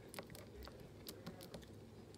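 Faint, irregular small clicks and pops of fingers poking and pressing into a large batch of purple slime.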